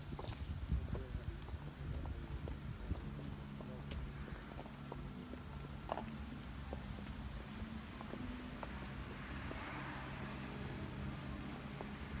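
Footsteps of a group of people walking, irregular light clicks and steps, with faint murmuring voices under them.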